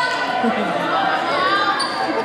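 Several voices of players and spectators talking and calling out, echoing in a large gymnasium, mixed with sneaker squeaks and court noise from the hardwood floor.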